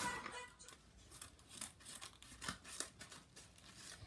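Faint, scattered crinkles and snaps of a paper mailing package being handled and opened.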